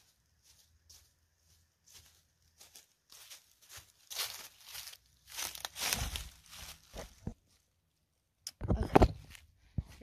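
Footsteps crunching through dry fallen leaves, coming closer and getting louder step by step. Near the end there is a loud burst of rustling and knocking as the phone is picked up off the ground.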